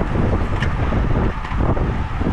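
Wind rushing over the microphone of a bike-mounted camera on a road bike moving at about 19 mph: a loud, steady rumbling noise.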